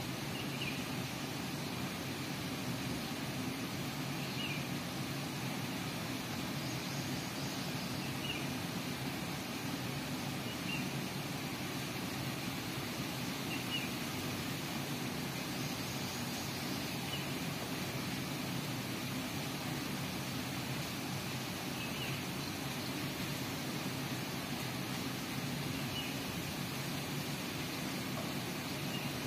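Steady low outdoor background rumble, with faint short high bird chirps every few seconds.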